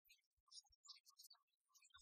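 Near silence, with only faint scattered crackle.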